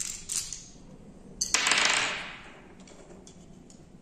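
Light metallic clicks from a fretsaw's steel frame and its clamp fittings being handled, then a sharp click about a second and a half in followed by a brief clatter that fades out.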